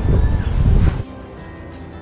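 Wind buffeting a helmet-mounted GoPro microphone during a fast abseil descent: a loud low rumble for about the first second, then a much quieter rush of air.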